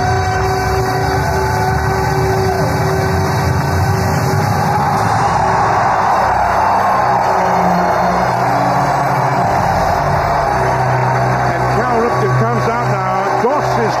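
Ballpark crowd cheering without a break, with music playing over the stadium PA, heard through a radio broadcast recording. Some higher yells or whistles stand out in the last few seconds.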